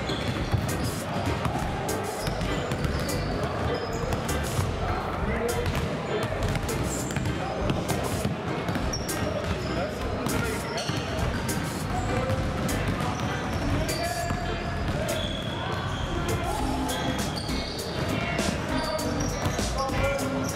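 Many basketballs being dribbled at once on a wooden sports-hall floor: a constant, irregular clatter of bounces from several players, with voices mixed in.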